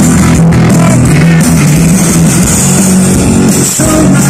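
Rock band playing live at high volume: electric guitars, bass and drum kit, with a brief break in the sound just before the end.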